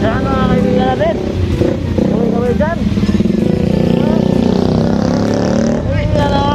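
A motorcycle engine idling close by, a steady low drone that comes up about two seconds in.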